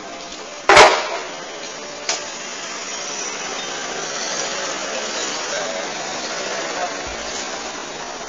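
A loud, sharp knock about a second in, a smaller one a second later, then a steady low noise.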